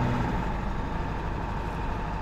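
Tow truck driving on the road, heard from inside the cab: a steady, even hum of engine and road noise.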